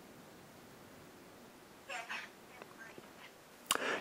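A child's voice, faint and thin, coming through a smartphone's speaker over a video call: a brief spoken answer about two seconds in, with near silence around it.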